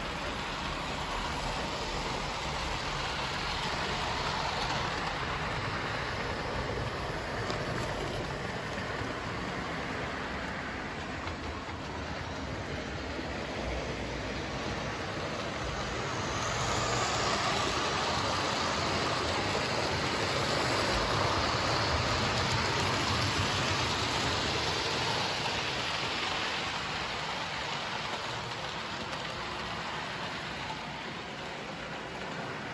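Several Hornby OO gauge model trains running round the layout: a steady noise of small electric motors and wheels on the track, louder for a stretch in the second half.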